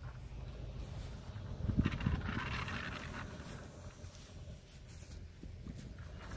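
A dog panting, loudest about two seconds in, over a steady low rumble of wind or handling noise on the microphone.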